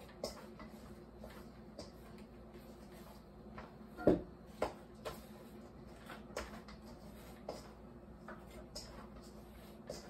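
Bread dough being kneaded by hand in a stainless steel mixing bowl: faint irregular squishes and taps of hands and bowl, with a louder knock about four seconds in and another about half a second later.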